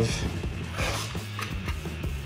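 Soft background guitar music, with the metal drawer of a U.S. General mechanic's tool cart sliding open on its runners about a second in.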